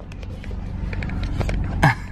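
Car engine idling, heard from inside the cabin as a steady low hum, with a few light clicks of handling. A short voice sound comes near the end.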